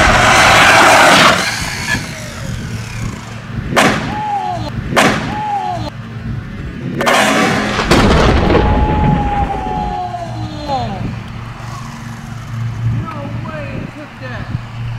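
Electric RC short-course truck, a Traxxas Ford Raptor R, running and crashing. A loud rush at the start, then several sharp impacts as it jumps, lands and tumbles. After each impact comes a whine that falls in pitch as the motor and wheels spin down.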